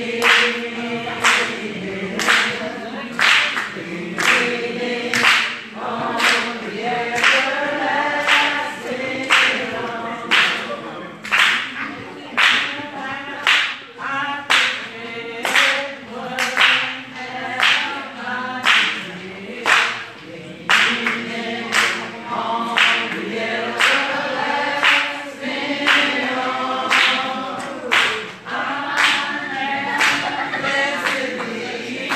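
Congregation singing together, with hands clapping a steady beat about once a second.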